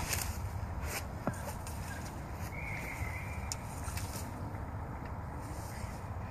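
Outdoor handling noise: a few small clicks and rustles as a landing net is handled, over a steady low rumble, with a faint brief tone about halfway through.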